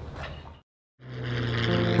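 A brief drop to silence, then the steady drone of a P-51C Mustang's Packard Merlin V-12 engine in flight, fading in and growing louder.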